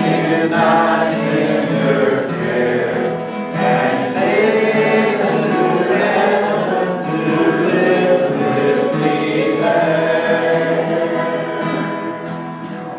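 Two acoustic guitars strummed to accompany several voices singing a gospel song together, tapering slightly near the end.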